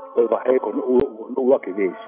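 A man's voice speaking over a steady held tone in the background, with a single sharp click about a second in.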